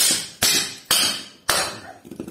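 Hammer blows on a car alternator's cast-aluminium housing, knocking the housing apart from the copper stator. There are four sharp strikes about half a second apart, each ringing briefly.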